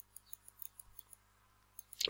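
Near silence broken by a few faint, quick ticks of a computer mouse scroll wheel being turned.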